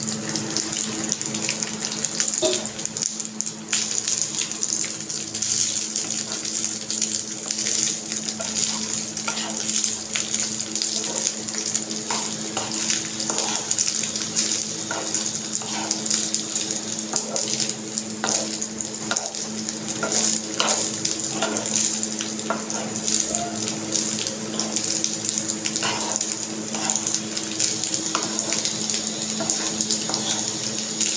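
Wooden spatula stirring boiled rice in a hot nonstick kadhai, with light scrapes and taps on the pan that come more often in the second half. Underneath runs a steady hiss with a low hum.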